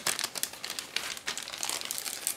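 Plastic bags wrapped around model-kit sprues crinkling as they are handled in the kit box, a continuous run of irregular crackles.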